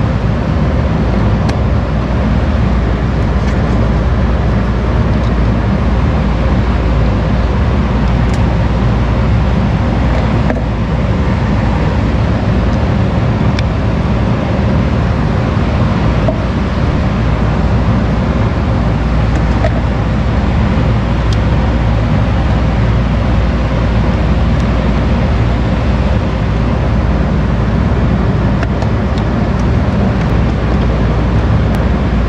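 Steady, loud machine hum with a low drone that holds level throughout, with a few faint clicks of a screwdriver on terminal screws.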